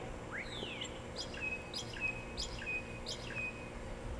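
A songbird singing: a couple of quick sweeping notes, then a run of about six short repeated whistled notes, two or three a second.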